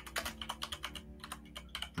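Typing on a computer keyboard picked up by a call participant's microphone: a run of quick, irregular keystrokes.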